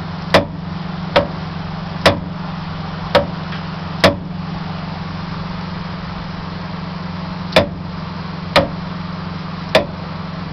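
Sharp metallic clunks from a worn steering ball joint on a Freightliner truck's drag link, about one a second for four seconds, then after a three-second pause three more: play knocking in the joint as the steering is worked, the sign of a bad ball joint. A steady low hum runs underneath.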